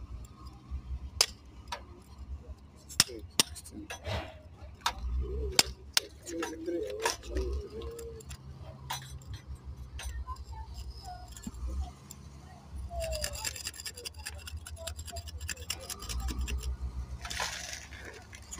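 Hand tools and metal test apparatus clinking and knocking with scattered sharp taps, then a dense run of quick taps about three quarters of the way through, as a chisel digs a test hole in compacted laterite for a field density test.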